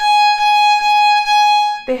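Violin bowing G-sharp with the second finger on the E string, the one pitch struck as about five repeated bow strokes in a rhythmic pattern, one step of an ascending A major scale exercise.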